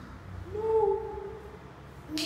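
A young child's voice holding a single high, hooting 'ooh'-like sound for about a second, dipping slightly in pitch at the end.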